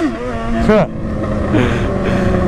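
Motorcycle engine running steadily under way, with wind noise on the microphone and a short rise and fall in pitch about two-thirds of a second in.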